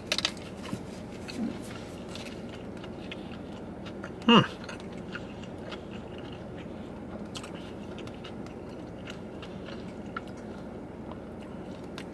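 A person chewing a mouthful of cheeseburger, with many small, irregular mouth clicks.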